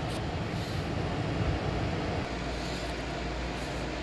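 Steady background machine noise, with a low steady hum joining about halfway through.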